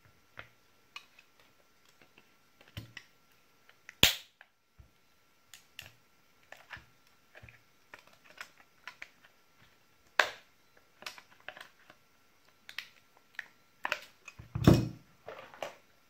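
Hard plastic battery-pack case clicking and cracking as it is squeezed in tongue-and-groove pliers, the glued seam breaking open: a scatter of small clicks with three loud sharp cracks, about four seconds in, about ten seconds in and near the end.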